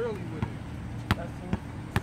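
A basketball dribbled on an outdoor hard court: about four sharp bounces, roughly half a second apart.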